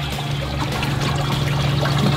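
Water trickling steadily, growing slightly louder, over a steady low hum.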